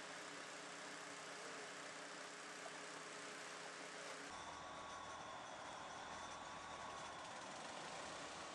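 Faint, steady background hiss with a low hum. The hum changes about four seconds in, when a low rumble and a faint high tone come in.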